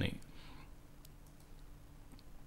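A spoken word ends, then a quiet room with a faint steady hum and a few faint, sharp clicks about a second in.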